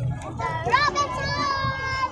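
A high-pitched voice calls out, rising sharply a little before a second in and then holding one note, over a low rumble of street and crowd noise.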